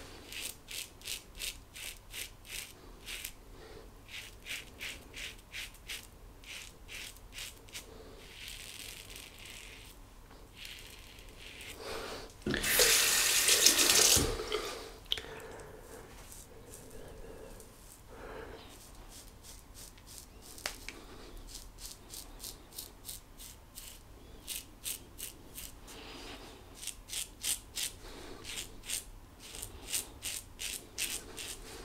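GEM Flip Top G-Bar single-edge safety razor scraping through lathered stubble in quick short strokes, about three or four a second in runs. About halfway through, a tap runs for about two seconds, the loudest sound.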